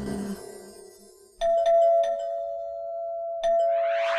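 The end of a Bollywood dance song fades out. Then a two-tone ding-dong doorbell rings, about a second and a half in and again near the end, each high-then-low chime ringing on.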